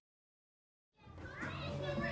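Dead silence for about a second, then children's voices and outdoor play-yard background fade in.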